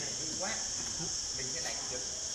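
Steady high-pitched insect chorus, an unbroken shrill drone, with faint voices of people nearby.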